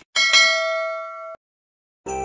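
Notification-bell sound effect: a bright ding struck twice in quick succession, ringing and fading, then cut off suddenly a little over a second in.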